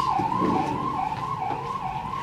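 A high warbling tone that rises and falls about twice a second, heard steadily behind a pause in speech.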